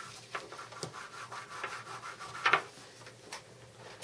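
Hand rubbing back and forth over a flexible fridge magnet sheet in uneven scraping strokes, wiping off its magnetized stripe pattern. One stroke about two and a half seconds in is louder than the rest.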